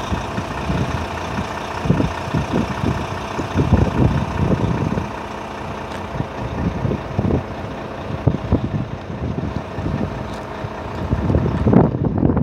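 A vehicle engine running steadily at idle, with wind buffeting the microphone in irregular gusts.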